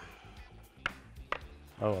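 Two light clinks of kitchenware about half a second apart, over faint background music; a short spoken 'ah' near the end.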